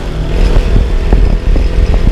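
KTM Duke 200's single-cylinder engine running as the bike is ridden along at road speed, with a heavy low rumble of wind buffeting the microphone.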